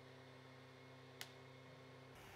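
Near silence: a faint steady low hum, with one small sharp click about a second in.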